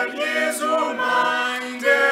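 Small mixed group of two women and three men singing a German hymn a cappella, holding notes that change about a second in and again near the end.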